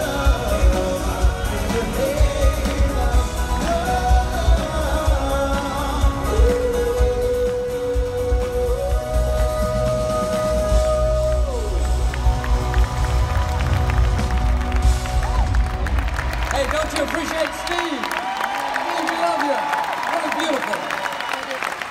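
Live band and singer performing through a large hall's sound system, with heavy bass and a long held sung note in the middle. Near the end the bass cuts out and the audience cheers.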